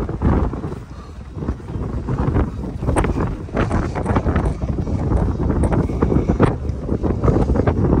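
Strong wind buffeting the microphone in uneven gusts, with a few sharp clicks in the middle of the gusts.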